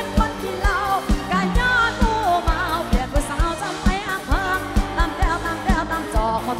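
Live band playing an Isan toei mor lam song through a stage sound system, a woman singing a wavering melody over a steady kick drum at about two beats a second.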